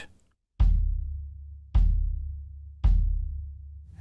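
Kick drum of a TAMA Superstar Classic maple kit, undampened with an unported front head, struck softly three times about a second apart by a plastic beater on a Tama Speed Cobra pedal. Each hit rings on as a warm, low tone, a definite musical note, that fades away.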